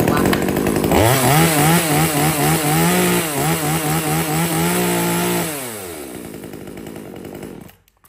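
Small Kamasu top-handle two-stroke chainsaw pull-started, catching about a second in, then revved up and down in quick blips. Near the middle it drops back to idle, and it cuts off just before the end. The engine sounds crisp and strong: a healthy running engine.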